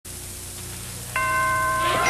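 Low hum and hiss, then about a second in a bell-like chime strikes suddenly and holds a steady, ringing tone.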